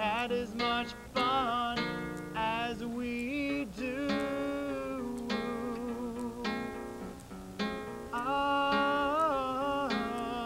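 A man singing long held notes, some with vibrato, while strumming and picking an acoustic guitar to accompany himself.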